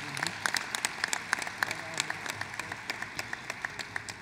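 Audience applauding: a fairly light round of clapping in which single claps stand out.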